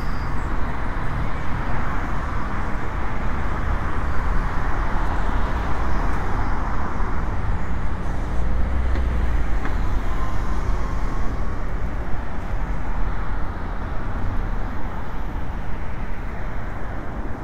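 Steady city road traffic, cars' tyres and engines going by on a multi-lane road. The low rumble swells as a city bus passes about halfway through.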